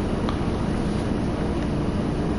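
Steady background noise, an even rushing hiss like wind on the microphone, with no other clear event.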